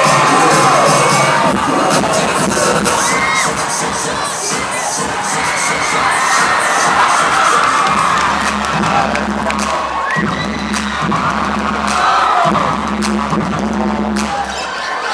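A large crowd of high school students cheering and shouting in a gymnasium, over a music track whose steady bass notes come in about halfway through.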